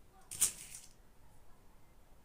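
A brief rustle of fabric being picked up and handled, lasting about half a second, a little after the start.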